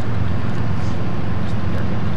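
Steady low rumble of a passing train, with a few faint ticks.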